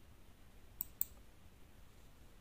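Two short, sharp clicks of a computer pointing-device button, about a fifth of a second apart, against quiet room tone.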